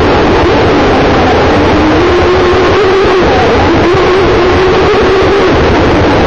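Aquacraft brushless electric motor of a Campbell Shovel RC model boat whining at speed. Its pitch dips about half a second in and climbs back by two seconds, over a loud, steady rush of water and wind, muffled by a plastic bag wrapped around the onboard microphone.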